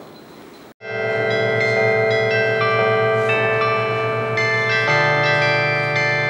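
Carillon bells ringing out a tune played from its keyboard console. Overlapping notes sound together and hang on, starting about a second in after a brief moment of quiet, and a lower bell joins near the end.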